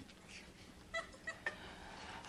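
Quiet room with a few faint, short, high-pitched vocal sounds from a man about a second in.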